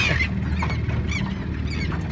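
Gulls giving short, high, arched calls about three times over the steady low hum of a boat engine idling.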